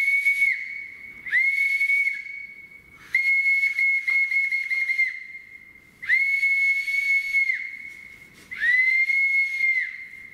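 Brass boatswain's call (bosun's pipe) blown in five high, shrill notes at one steady pitch, each sliding up at its start and dropping away at its end. The third and longest note is broken by a rapid warble.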